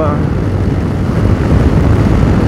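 Yamaha Tracer 7's CP2 parallel-twin engine running steadily under way, heard with wind rush on the microphone.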